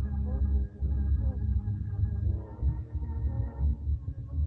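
Ambient electronic music: a deep, unevenly pulsing bass under wavering, gliding tones, with a thin, steady high tone above.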